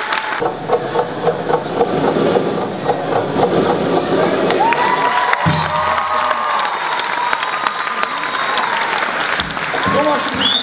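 Audience applause and cheering, giving way about halfway through to background music with a held melody.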